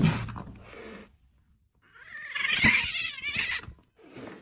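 Cats squaring off through a glass door: a sudden loud burst at the start that fades over about a second, then a long, wavering, warbling yowl from about two seconds in.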